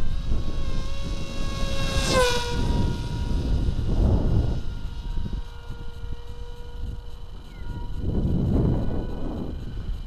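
A small electric racing wing's brushless motor and propeller droning in flight. Its pitch drops sharply about two seconds in, then holds steady and fades near the end, over a low rumble.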